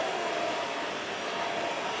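Steady café background noise: an even rush with no distinct events.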